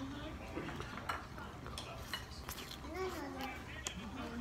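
Light clicks and clinks of chopsticks and small dishes at a restaurant table, scattered through a low steady room hum. A short voiced sound comes about three seconds in.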